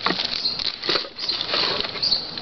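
Hands rummaging through shredded-paper packing in a cardboard box: a dry, crinkly rustling that comes and goes in irregular scratches.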